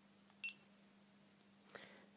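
A GoPro HD Hero2 camera gives one short, high-pitched beep about half a second in, confirming a button press as its menu steps to the time-lapse setting.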